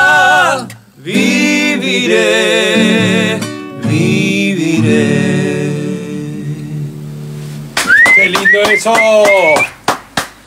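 Two men singing the final held notes of a Spanish-language ballad over a strummed acoustic guitar, with a short break about a second in; the last guitar chord then rings and fades. Near the end, loud voices call out with rising pitch.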